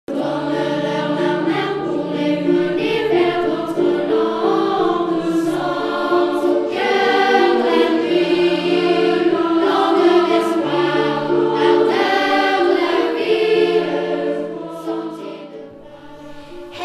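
A choir singing slow, held chords in several parts, fading away near the end.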